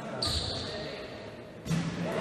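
Basketball bounced on the court floor by a player at the free-throw line, with voices in the hall behind. A sudden louder burst of sound comes in near the end, around the moment of the shot.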